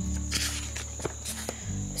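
Pages of a paperback picture book being handled and turned: paper rustling with a few soft taps, over low sustained tones.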